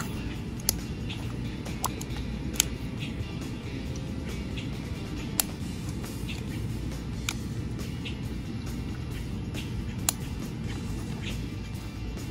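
Steady low rumble of outdoor background noise, with a few faint clicks and taps from plastic craft-paint squeeze bottles being handled, squeezed and set down on the table.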